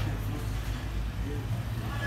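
Steady low mechanical hum, with faint voices in the background.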